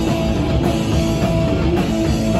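Live rock band playing loud: electric guitar, bass guitar and a full drum kit together.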